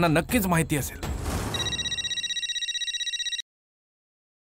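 Mobile phone ringing with a rapid electronic trill for about two seconds, then cut off abruptly. A brief rush of noise comes just before the ring starts.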